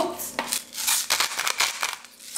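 Salt being added over a bowl of mashed chickpea mixture: a quick run of dry, rasping clicks.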